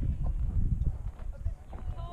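Gusty wind rumbling on the camera's microphone, with faint voices of people chatting in the background.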